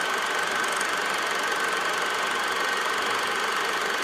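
Film projector running sound effect: a steady mechanical whir and rapid fine clatter with a thin high whine, at an even level throughout.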